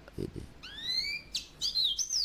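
A small bird calling: a rising whistled note about half a second in, then a quick downslurred chirp and a wavering, warbled note near the end.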